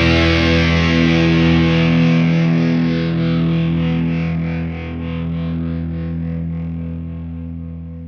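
Distorted electric guitars and bass holding a final rock chord that rings on and slowly fades out, with a faint rapid wavering in the high end of the ring as it dies away.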